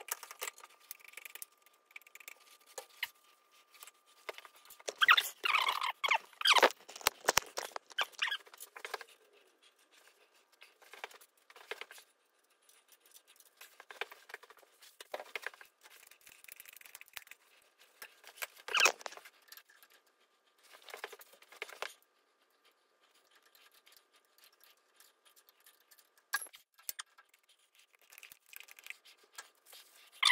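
Scattered squeaks, clicks and metal handling noises of a hand grease gun being worked on a mini excavator's pivot-pin grease fittings. The clatter comes in bursts, loudest about five to nine seconds in and again near the middle, over a faint steady high tone.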